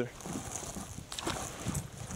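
Light irregular knocks and water splashing as a bass is let go over the side of a kayak, over a steady hiss.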